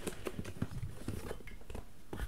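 Light, irregular clicks and rustles of beer cans and box packaging being handled and lifted out.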